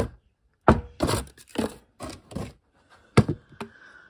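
A series of about six short knocks and thunks as a cardboard kit box is handled and a metal tin and a plastic bottle are taken out and set down on a workbench.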